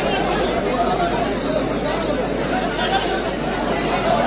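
A large crowd talking all at once: a steady babble of many overlapping voices with no single speaker standing out.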